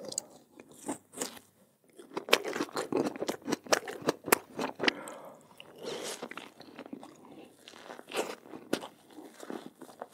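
Close-miked crunching and chewing of Oreo cookies and a chocolate-coated Oreo treat: crisp bites and crunches, densest from about two to five seconds in, with softer chewing between.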